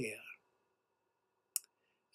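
A man's voice trails off at the end of a sentence, then a pause of near quiet broken by one short, sharp click about a second and a half in.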